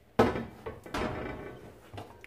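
Metal hamburger patty press being handled on the counter: a sharp metallic clack about a quarter second in, then two lighter knocks, each with a short ringing decay.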